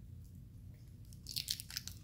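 A man drinking from a small communion cup: faint mouth sounds as he drinks and swallows, then a quick cluster of soft clicks and lip smacks in the last half second or so.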